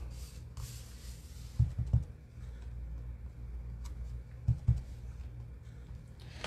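A rubber stamp being tapped onto an ink pad: two pairs of dull taps, one pair a little over a second in and another past four seconds, over a steady low hum. A brief rustle comes just after the start.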